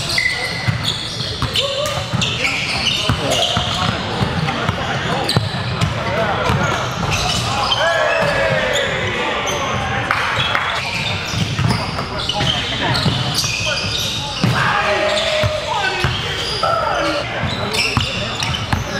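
Live gym game sound: a basketball bouncing on a hardwood court again and again over indistinct voices of players and spectators, all echoing in a large hall.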